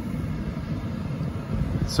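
Steady low hum inside the cabin of a 2017 Lexus GX 460, with its engine idling and its climate-control fan running.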